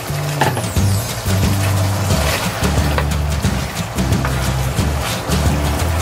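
A wooden spatula scraping and knocking against a wok as chicken pieces are stirred into curry paste. Background music with a low bass line is the loudest sound throughout.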